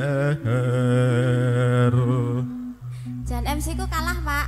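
Live campursari music: a singer holds one long note over sustained keyboard chords, breaks off about two and a half seconds in, then starts a new wavering phrase over a deep held bass note.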